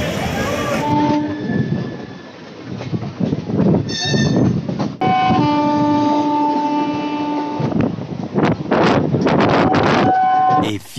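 Suburban electric train running on the rails, with a horn sounding briefly about a second in and again as one long steady blast of over two seconds from the middle; irregular rail clatter near the end.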